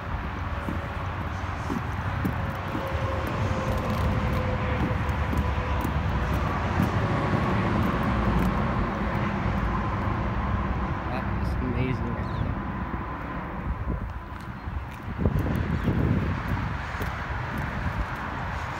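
Outdoor rumble of wind on the microphone under a distant engine drone, whose faint hum falls slowly in pitch as it passes. There are a few knocks and steps on asphalt near the end.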